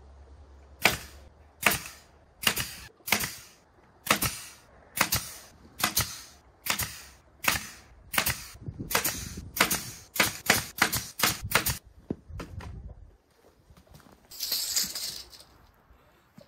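Pneumatic fastener gun firing about twenty shots into a wooden frame, fastening galvanized wire mesh. The shots come about a second apart at first, quicken near the end and stop, followed by a brief hiss.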